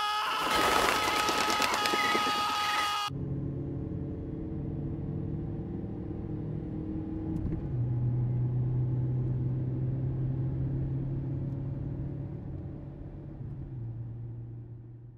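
A loud rushing noise for the first three seconds cuts off abruptly. A car then runs with a steady low drone heard from inside the cabin, its note dropping slightly and getting louder about eight seconds in.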